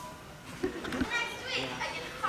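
Indistinct young voices talking and calling out in an auditorium, with a single knock about a second in.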